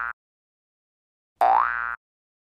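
A cartoon boing sound effect rising in pitch, heard twice. The tail of one falls at the very start and a full one, about half a second long, comes about a second and a half in. It is the pop-up cue for the animated 'like' and 'subscribe' buttons.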